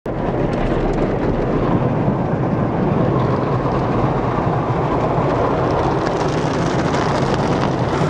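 An automatic car wash heard from inside the car: water spray and spinning cloth brushes beating on the windshield and body make a steady, loud rushing noise with a low rumble.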